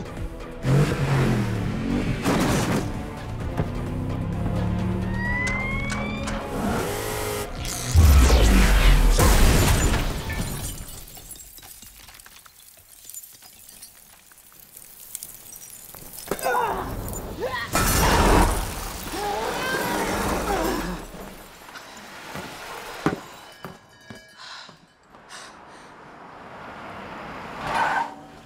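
Action-film soundtrack: score music under crashes and glass shattering, with a heavy boom about eight seconds in and another about eighteen seconds in.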